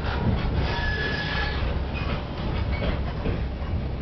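Passenger train running on the rails, heard from inside the carriage: a steady rumble of wheels and track, with a faint high wheel squeal about a second in.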